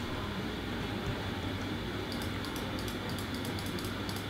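Steady room noise with a low hum. From about halfway through come faint, quick, light clicks of a computer keyboard and mouse being worked.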